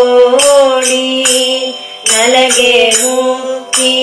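A woman's voice singing a slow devotional melody, holding long notes that bend gently in pitch, over a beat of bright metallic percussion strokes.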